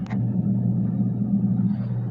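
Steady low mechanical hum, with a short knock just after the start.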